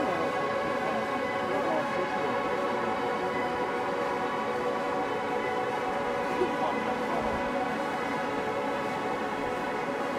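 A steady droning hum with many evenly spaced overtones, unchanging in pitch and level, with faint voices now and then.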